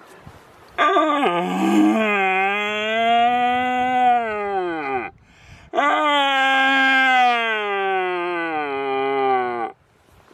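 Red deer stag roaring in the rut: two long roars of about four seconds each, each falling in pitch as it dies away.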